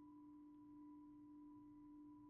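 Near silence: only a faint steady hum with a thin higher whine above it, the background noise of a poor laptop microphone.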